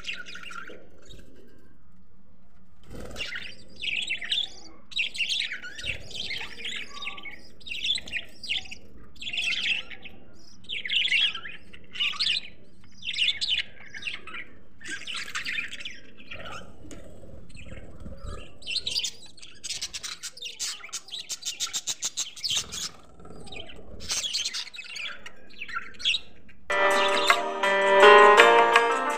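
A flock of budgerigars chirping and chattering in a cage, in bursts about once a second, with a spell of rapid chatter in the middle. Music with plucked strings comes in near the end.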